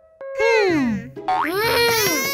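Cartoon sound effects over light children's background music: a long falling glide, then a second tone that rises, arches and falls.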